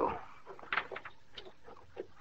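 A few faint, short knocks and clicks, three or four spread over a second or so, over a low hiss.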